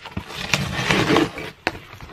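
Cardboard shipping box being pulled open by hand: the flaps scrape and rustle, with a few sharp snaps, the last near the end.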